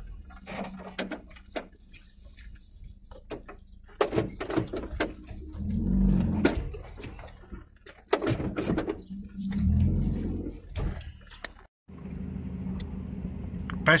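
Campervan driving slowly along a rough, unmade lane: the engine runs low underneath while the body and fittings rattle and knock over the bumps, with two louder rumbling swells partway through. The sound cuts off abruptly near the end, giving way to a steadier cab hum.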